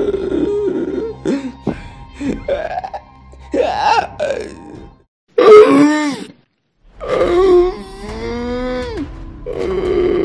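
Eerie, drawn-out human moans and groans, several short ones rising and falling, a loud one a little past the middle, then a brief silence and one long wavering moan.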